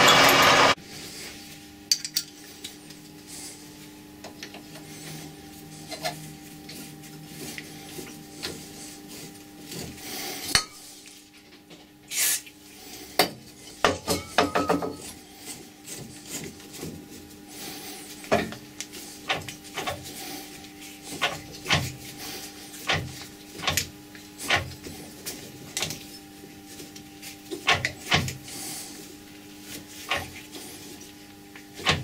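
A twist drill boring into copper bar in a lathe chuck stops under a second in. Then a hand tap in a tap wrench cuts a thread into the copper, with irregular metallic clicks, clinks and scrapes over a steady hum.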